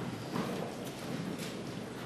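Room noise of people moving about in a courtroom, with shuffling and a few soft knocks like footsteps on the floor.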